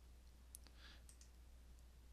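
Near silence with a few faint computer mouse clicks as an object is clicked to select it, over a low steady hum.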